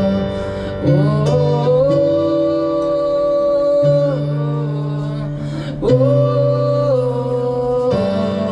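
Live solo performance of an electronic keyboard playing sustained chords, with a male voice singing long held notes that move to a new pitch every couple of seconds.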